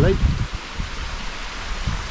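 Wind buffeting the microphone in low, irregular gusts over a steady hiss.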